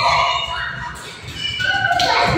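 Young girls' high-pitched wordless voices, held notes and squeals in play, with bare feet thudding on a hard floor.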